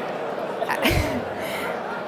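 A single sneeze close to the microphone just under a second in, with a deep thump, heard over the steady murmur and light laughter of a large banquet audience.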